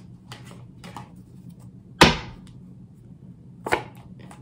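Tarot cards being handled after a shuffle: faint card clicks, a sharp slap about halfway through, and a second, shorter one near the end.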